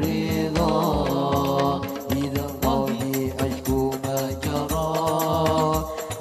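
Men's voices singing a devotional Arabic melody in unison, with long held notes that waver and slide between pitches, over a steady pattern of hand-drum strokes.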